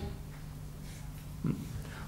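Pause between spoken sentences, filled with a steady low electrical hum on the recording. A brief low sound comes about one and a half seconds in.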